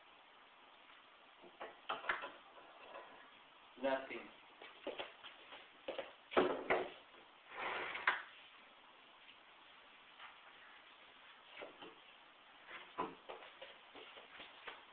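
A few spoken words from a man, with scattered short knocks and clicks between them.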